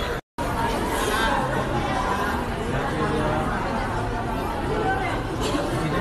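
Overlapping, indistinct chatter of several people talking, without clear words. The sound cuts out completely for a split second right at the start.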